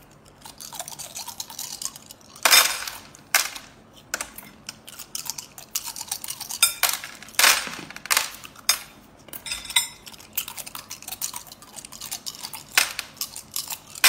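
Small cooked sea snail shells on bamboo skewers clicking and clinking against one another and the plate as they are bitten and pulled off by hand, with a few louder sharp clicks along the way.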